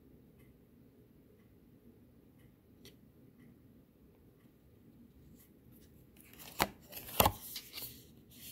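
Mostly quiet room tone, then near the end printed cardstock cards being handled against a wooden board: a short rustle with two sharp clacks.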